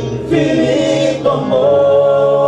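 Male vocal group singing a cappella in harmony through microphones, holding long chords. A new chord comes in about a third of a second in and another about a second and a half in.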